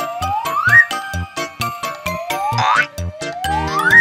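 Upbeat background music for children with a steady beat, and a whistle-like tone sliding upward in pitch three times.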